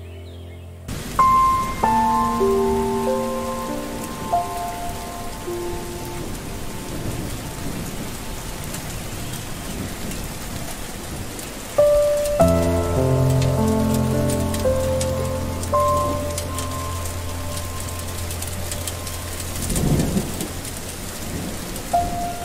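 Steady rain hissing, with a low rumble of thunder near the end. Soft instrumental meditation music plays over it: sustained melodic notes that come in about a second in and again about halfway through, the second time over a low steady drone.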